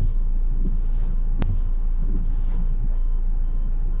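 Car windscreen washer and wipers working: the blades sweep across the wet glass with soft swishes, over the steady low hum of the idling engine heard inside the cabin. A single sharp click about one and a half seconds in.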